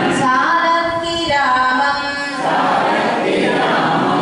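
A woman singing a devotional Tamil verse unaccompanied into a microphone, holding and gliding between notes, with a short break about halfway through.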